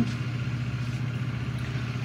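A steady low background hum with a faint hiss, unchanging throughout.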